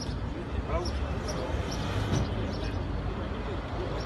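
Indistinct voices of several people talking, over a steady low rumble of outdoor background noise.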